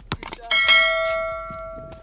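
A bell-chime notification sound effect, struck once about half a second in and ringing out for about a second and a half, after a couple of short clicks.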